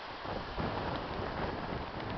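Wind noise on the microphone, a low rumble that sets in a moment in and keeps on.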